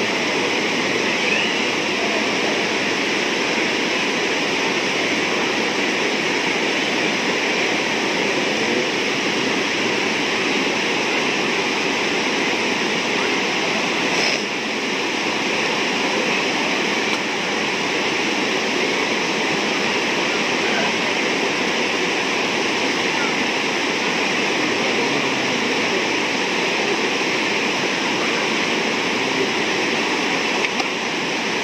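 Steady rushing of river rapids and falling water, an even roar of white water that holds at one level throughout.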